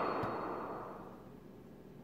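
The end of a film trailer's soundtrack playing in a small room, dying away smoothly over about a second and a half and leaving faint room tone.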